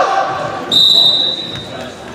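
Referee's whistle blown once, a steady high tone of about a second, signalling the server to serve. It follows the tail of a drawn-out shout, and a volleyball is bounced on the gym floor near the end.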